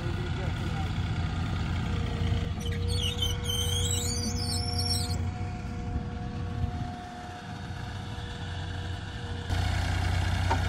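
Delivery forklift's engine running steadily, easing off about seven seconds in and picking up again near the end.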